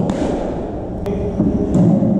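Cricket ball struck by a bat in an indoor net: a solid knock at the start that rings on in the hall, then a sharper click about a second in, over a steady low hum.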